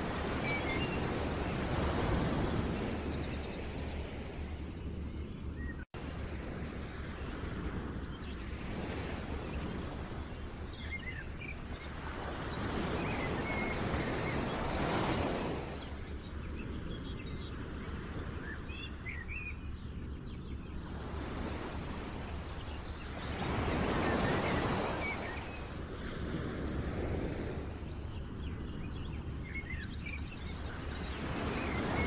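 Outdoor nature ambience: swells of rushing noise that rise and fall every few seconds, with scattered bird chirps over a low steady hum. The sound drops out completely for an instant about six seconds in.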